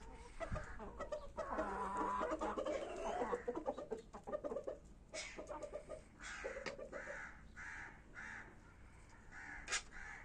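Kashmiri desi chickens calling: a drawn-out call about a second and a half in that lasts some two seconds, then a run of short repeated calls through the last few seconds.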